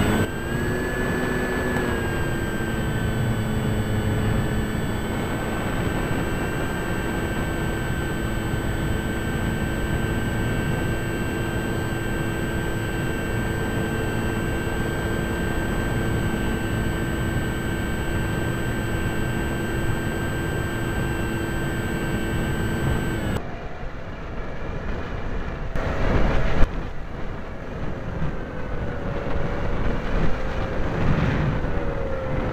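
Model airplane's motor running at a steady pitch, heard from the onboard camera over wind noise. About 23 seconds in the motor cuts off, leaving wind rush, and a few seconds later comes a jolt as the plane touches down and rolls on concrete.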